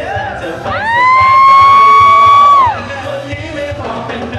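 Live band music with a voice holding one loud high note for about two seconds, scooping up into it and falling away at the end.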